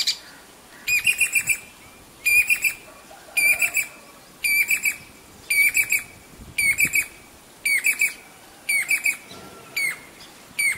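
Jacobin cuckoo calling: a high, whistled phrase of three or four quick notes, repeated about once a second throughout.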